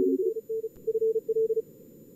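Morse code (CW) tones from a contest logger's simulated radios, keyed fast on and off at one pitch until about a second and a half in, then giving way to faint steady receiver hiss. At the very start a second, lower-pitched CW signal overlaps briefly.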